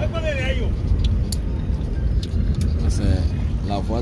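Steady low rumble of a car driving along the road, heard from inside the cabin, with voices talking over it near the start and near the end.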